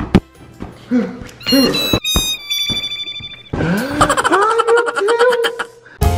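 A ball hits with one sharp thump, followed by comedic sound effects: a short falling run of electronic tones, then a long warbling, swooping tone that fades out near the end.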